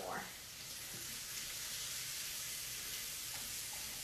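Vegan burger patties and onions sizzling in a frying pan, a steady, even hiss.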